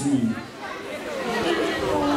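Several audience voices calling out an answer over one another, overlapping chatter that is quieter than the MC's amplified voice.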